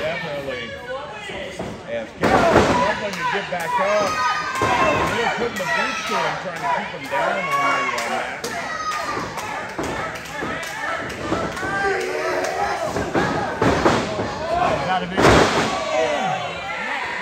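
Wrestlers' bodies slamming onto the canvas of a wrestling ring: a loud thud about two seconds in and another near the end, over steady crowd voices and shouting.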